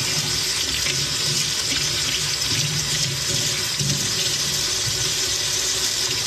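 Kitchen sink tap running in a steady stream, the water splashing over hands into the sink.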